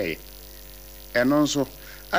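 A man speaking, broken by a pause of about a second, over a steady low electrical mains hum.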